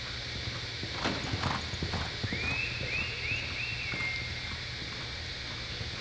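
Hoofbeats of a reining horse galloping on the soft dirt of an indoor arena, a quick run of hoof strikes about a second in. A thin high chirping tone, a few short rising chirps ending in a held note, follows about halfway through.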